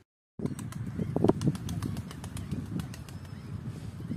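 Pigeon wings flapping, a quick run of sharp wing claps over a low rumble, starting after a brief silent gap.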